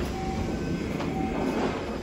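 The passenger doors of a Kyoto subway 20 series car sliding open at a station, over the steady running noise of the stopped train.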